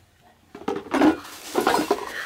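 Empty plastic product bottles set down and knocked against other containers, a run of light clattering knocks and rustles starting about half a second in.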